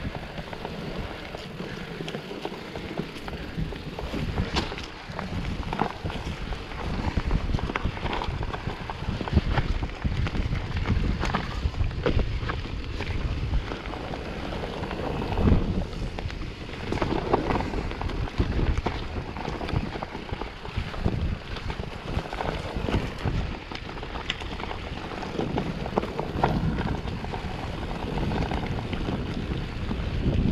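Mountain bike riding a dirt singletrack: wind buffeting the microphone and tyre noise on the trail, with frequent irregular knocks and rattles from the bike going over bumps.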